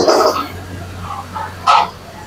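Metal ladle scraping and knocking in a wok over a gas burner while chicken is stir-fried: one loud stroke at the start and another near the end, over a steady low hum.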